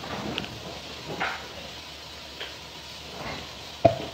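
Faint handling noises: a few soft knocks and rustles, then one sharp knock just before the end.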